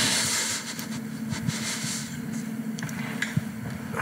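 Rustling and a few light clicks as an Ethernet patch cable is handled and unplugged from a network switch, over a steady low background hum.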